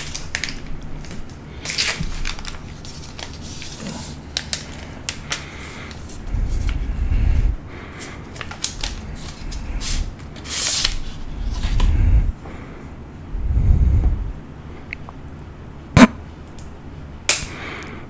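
A plastic spoon of salmon roe handled close to a condenser microphone: scattered small clicks and rustles, with three low breath puffs onto the mic, about a second each, in the middle of the stretch.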